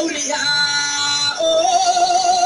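A woman singing long held notes: one steady note, then about one and a half seconds in a jump to a higher note sung with a wavering vibrato.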